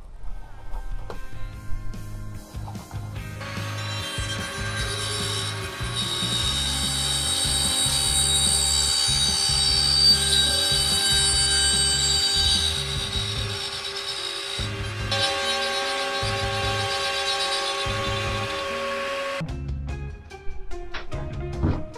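Handheld trim router cutting a round hole through the cabin ceiling panel for a larger LED light fitting. It starts about three seconds in, runs steadily while cutting, and stops just before the end, under background music.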